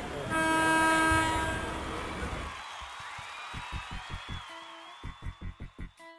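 A rising rush of noise builds into one loud, sustained horn blast about two seconds long, which then fades. About three and a half seconds in, music starts with a quick pulsing rhythm.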